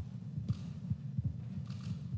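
Handling noise on a desk microphone: a handful of soft, irregular low thumps with faint cloth rustling as a witness removes his face mask close to the mic.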